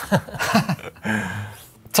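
A man laughing: short chuckles in the first second, then a brief held voiced sound that trails off into quiet.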